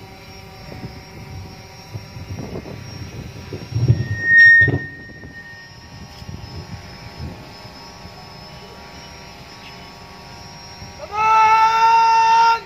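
Quiet outdoor ceremony background with a short, shrill whistle blast about four seconds in. About a second before the end a brass instrument starts a loud held note, as at the salute to a freshly hoisted flag.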